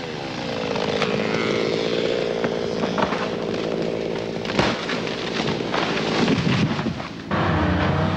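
Chainsaw running steadily under load as it cuts through the trunk of a standing hardwood tree, with a sharp crack about four and a half seconds in as the tree goes over. A lower, steady drone takes over near the end.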